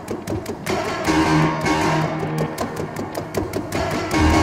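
Grand piano played both from the keyboard and by hand on the strings inside the case: a fast run of sharp repeated attacks over a held low note.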